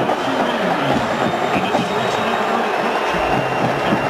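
A college marching band performing on a football field, heard from high in the stands: its brass and drums mix with the crowd's noise in a dense, steady wash, with a few low drum thumps about a second apart near the end.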